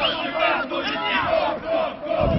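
Football spectators shouting together, many voices overlapping throughout.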